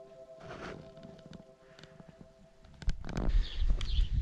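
Quiet room tone with a faint steady hum of a few held tones and light clicks. About three seconds in the sound cuts to wind rumbling on the microphone, with footsteps, as the camera is carried outdoors.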